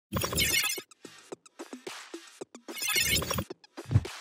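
Electronic intro music with two loud crashing hits, one at the start and one about two and a half seconds later, short rhythmic beats between them, and a deep boom near the end.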